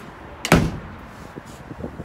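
A door banging shut: one loud knock with a short ring about half a second in, followed by a few faint knocks.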